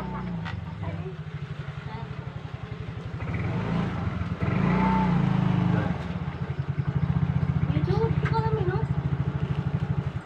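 A motorcycle engine running with a rapid, even pulsing beat, growing louder about four seconds in and staying loud through the second half.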